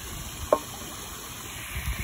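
Water sloshing and dripping around a dip net being lifted from shallow pond water, with a single sharp plop about half a second in.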